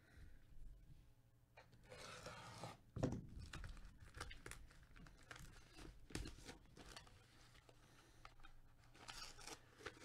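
Plastic wrapping and tape being peeled and torn off a cardboard poster tube: faint, irregular crinkling and rustling with small crackles, and a louder rip about three seconds in.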